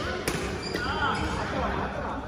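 Badminton racket striking a shuttlecock during a doubles rally: one sharp crack just after the start, then a fainter hit, in a large echoing hall.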